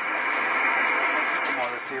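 Marine radio static: a steady, narrow-band hiss from the radio's speaker as the channel opens between transmissions. It cuts off near the end when a voice starts.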